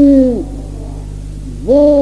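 A man's voice chanting an Urdu marsiya in a melodic recitation style. He holds a long sung vowel that falls off and ends, and after a short pause begins the next line. A steady low mains hum from the old tape recording runs underneath.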